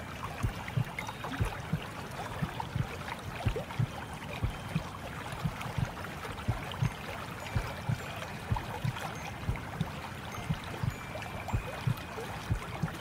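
Water lapping and gurgling in a steady wash, with soft low thuds at an uneven pace of about two a second.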